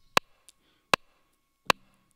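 Three sharp, evenly spaced metronome clicks from an Akai MPC 500, about three-quarters of a second apart: a count-in ahead of the sequence, which starts on the next beat. A faint tick falls between the first two clicks.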